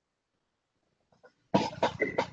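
A man coughing, two sharp coughs in quick succession near the end after near silence, picked up through a video-call microphone.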